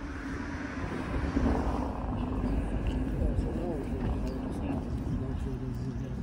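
Street ambience: steady road-traffic rumble with people talking nearby.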